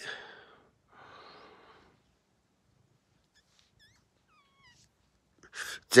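A couple of soft breathy huffs, then a few faint, short, falling cat mews a few seconds in.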